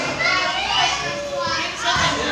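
Young people's voices chattering and calling out at once, lively and overlapping.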